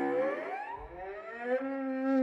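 Solo cello, bowed, sliding upward in pitch in two slow glissandi, then holding a steady low note from about a second and a half in.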